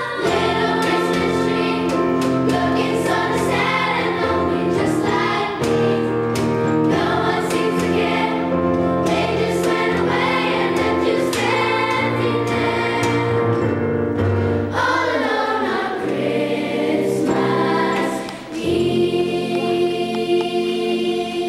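Fifth-grade children's chorus singing over steady musical accompaniment, with a brief dip in the sound a second or two before the end.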